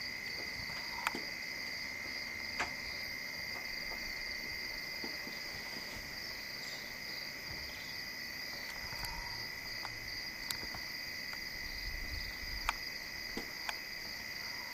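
Crickets chirring at night, a steady unbroken high trill, with a few faint clicks scattered through.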